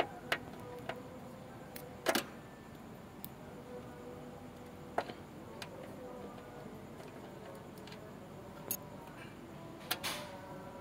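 Scattered faint metallic clicks, about ten spread irregularly, from a socket wrench on the crankshaft pulley bolt as the crank is turned by hand to line up the timing marks for a timing belt change. A faint steady hum runs underneath.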